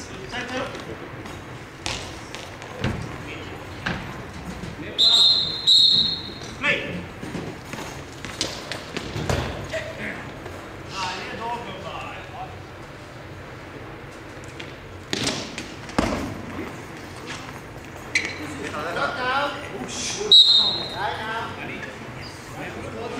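Echoing sports-hall sound during a goalball match: a referee's whistle blows two short blasts about five seconds in and one more near the end, with a ball thudding on the hard floor between them.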